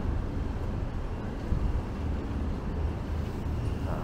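Outdoor street ambience: a steady, unevenly fluttering low rumble of wind on the microphone, with road traffic.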